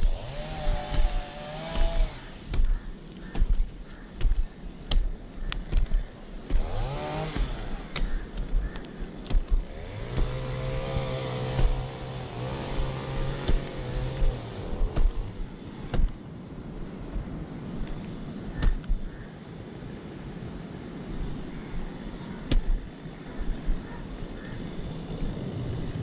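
Climbing spikes knocking into an acacia trunk, about once a second, as a climber steps up the tree. An engine passes in the background, its tone rising and then holding steady for several seconds mid-way.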